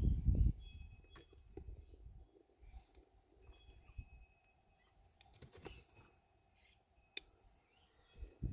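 Mostly quiet background with a few faint clicks and some short, faint high chirps; the highbanker's pump is switched off.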